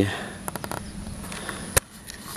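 Camera and hand handling noise: a few light clicks about half a second in, then one sharp click near the end, over a steady faint high-pitched buzz.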